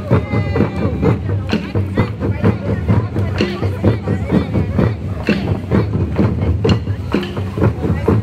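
A drum group playing a steady, driving rhythm on hand drums, cheering on passing runners, with crowd voices mixed in.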